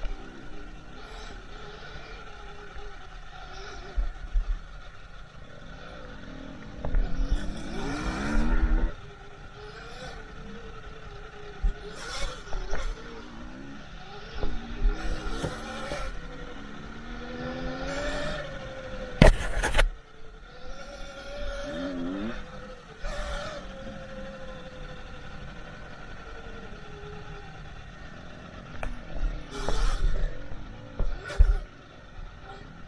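Sur-Ron electric dirt bike ridden hard along a dirt trail: the electric motor's whine rises in pitch again and again as the rider accelerates, over a steady hum and the rumble of the tyres on rough ground. A sharp knock stands out about nineteen seconds in.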